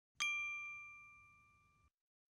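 A single bright bell-like ding, struck once and ringing down for about a second and a half, then cut off abruptly: a chime sound effect on the video's closing logo card.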